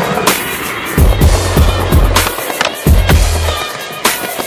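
Backing music with a steady beat and bass line, over skateboard wheels rolling on stone paving with the sharp clacks of the board.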